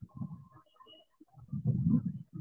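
Bird calls: low, repeated cooing, loudest about a second and a half in, with a few brief higher chirps.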